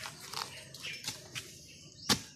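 Harvesting a bamboo shoot at the base of a bamboo clump: about four short knocks and cracks with rustling of dry bamboo leaves and stalks.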